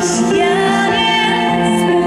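Pop song with a woman singing held, gliding notes into a microphone over instrumental backing, played loud through the concert PA.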